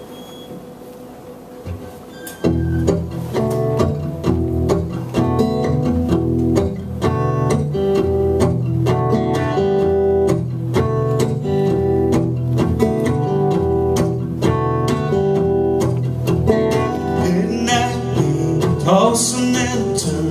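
Solo acoustic guitar played live as a song's introduction: after a short quiet pause, steady rhythmic strumming begins about two and a half seconds in and carries on.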